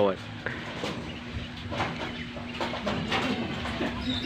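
Domestic pigeons cooing faintly over a steady low hum.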